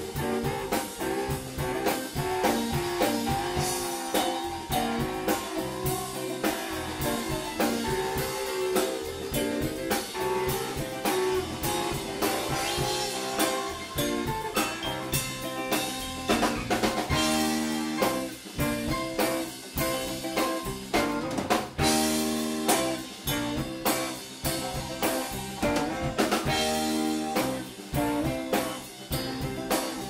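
A live rock band playing: drum kit keeping a steady beat under electric guitars and keyboards.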